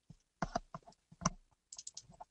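Faint, irregular clicking of computer keys and a mouse: about a dozen light clicks over two seconds, a cluster of quick ones coming near the end.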